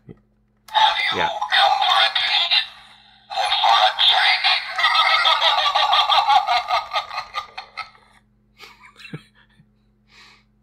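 Talking skeleton Halloween decoration playing its recorded voice through its small built-in speaker, tinny and thin, in a short burst of about two seconds and then a longer one of about five seconds, triggered by being switched off and on again.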